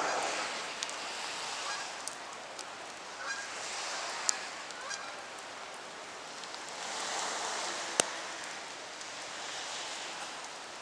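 A flock of geese honking as they fly overhead, over a steady hiss that swells and fades. A few sharp clicks cut through, the loudest about eight seconds in.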